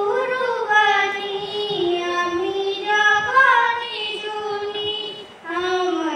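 A girl singing a Bengali gojol (Islamic devotional song) solo and unaccompanied into a microphone, in long held notes that glide between pitches, with a short pause for breath near the end.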